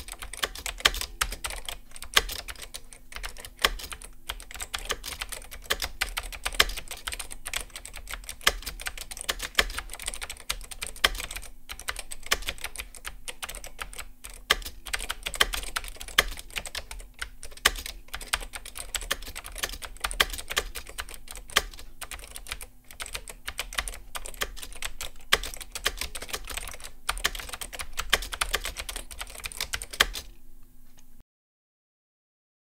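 Fast typing on a Copam K-450 (LogoStar KU-450) keyboard with Copam mecha-membrane switches and thin ABS double-shot keycaps: a dense, unbroken run of keystroke clacks with occasional louder strikes.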